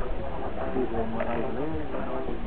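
Indistinct talking from people at a distance, words not made out, over a steady low rumble.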